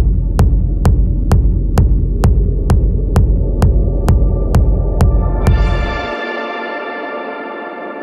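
Techno track ending: a steady beat, a little over two strokes a second, over a heavy bass drone. About five and a half seconds in the beat stops and the bass cuts out a moment later, leaving a held synthesizer chord that slowly fades.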